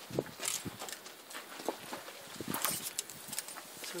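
Scattered soft rustles and light knocks as a lead rope is handled and tied up to an overhead ring, with a horse shifting its hooves on dirt.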